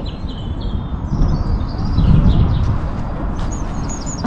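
Small birds chirping in short calls over a steady low outdoor rumble, which swells about two seconds in.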